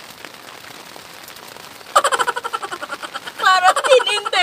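Girls laughing and squealing, a sudden burst of rapid, pulsing high-pitched laughter starting about halfway through and rising into loud squeals near the end. Before it there is only a faint steady hiss.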